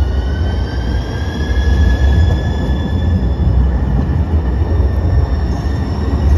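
Siemens S700 light-rail vehicle pulling away from a stop: a rising electric whine from its traction drive as it accelerates, over a heavy low rumble of the moving train.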